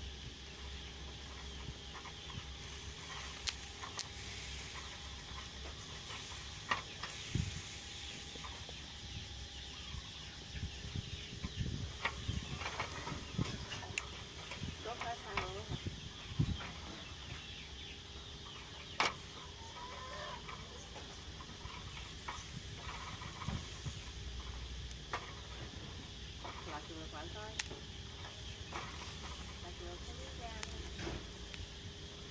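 Metal tongs clicking now and then against a wire grill rack as quail and pork skin are turned over charcoal. Chickens cluck at times in the background.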